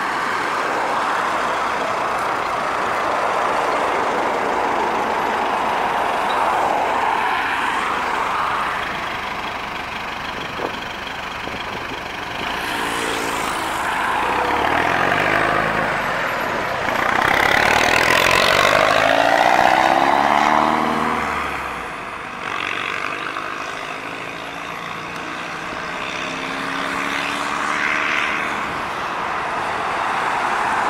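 Mercedes-Benz 710 light truck's diesel engine pulling away and driving past, its engine note sliding in pitch and loudest about two-thirds of the way through, then fading as it goes away. Steady road traffic noise runs underneath.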